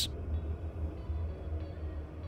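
Amtrak passenger train in motion: a steady low rumble with faint running noise above it.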